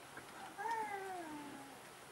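A faint, drawn-out cry about a second long, starting about half a second in and falling steadily in pitch.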